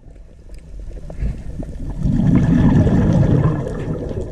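Water churning and bubbling around an underwater camera, a rough, low rush that builds to its loudest about two seconds in and eases near the end.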